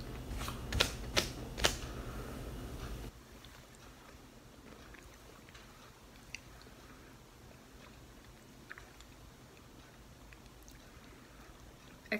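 A person chewing a piece of gritty rose clay: four sharp crunches in the first two seconds, then faint chewing. A low background hum cuts off about three seconds in.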